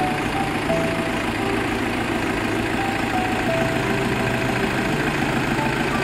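Bus engine running steadily, heard from inside the cabin as it moves slowly, a low, even rumble with faint engine tones.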